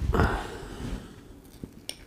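A metal teaspoon handled against a small glass dessert jar, giving two or three light clicks near the end as it digs into the mousse. A short, soft handling sound comes at the start.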